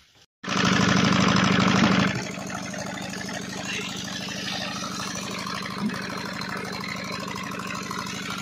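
Stationary tubewell engine running steadily, driving the water pump by belt. It cuts in abruptly about half a second in, is louder for the first couple of seconds, then settles to an even, lower running sound.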